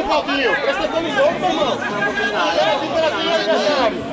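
Several people talking over one another in overlapping, unintelligible chatter close to the microphone.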